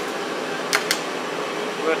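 Steady background hiss like a fan running, with two quick light clicks about three quarters of a second in, close together, likely a screwdriver touching metal inside the injection pump's governor housing.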